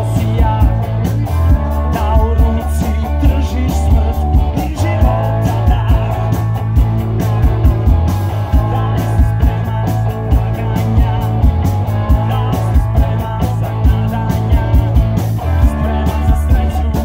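Live rock band playing: electric guitars, bass guitar and drum kit, with a steady drum beat and a bass line that moves between held notes.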